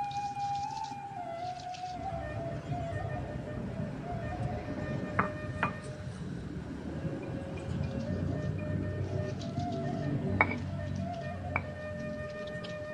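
Stone grinder rubbing grated coconut into chili paste on a flat stone grinding slab (batu lado): a rough, uneven scraping with a few sharp clicks of stone on stone. Soft background music plays throughout.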